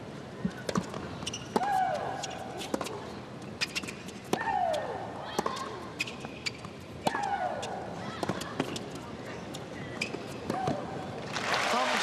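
Tennis rally: sharp racket strikes and ball bounces, with Maria Sharapova's long, falling-pitch shriek on three of her shots, about every two and a half seconds. Near the end the point is won and the crowd breaks into applause.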